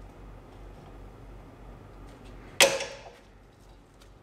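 A parking-brake return spring on a rear brake caliper snaps off its hook as it is levered with a flathead screwdriver. There is one sharp metallic snap about two and a half seconds in, with a brief ring after it.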